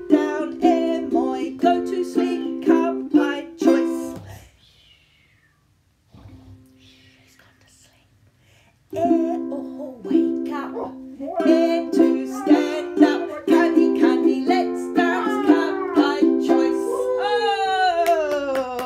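Ukulele strummed in steady chords with a woman singing along. It stops about four seconds in, leaving a quiet pause of about five seconds, then the strumming and singing start again and the voice ends on a long falling glide near the end.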